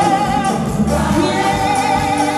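Live gospel praise music played through a church's loudspeakers: a woman leads the singing with a choir joining in, over a band keeping a steady beat.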